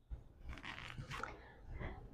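Faint rustling and breathing from a person exercising on a mat, twisting the torso side to side, with a few small crackles of movement.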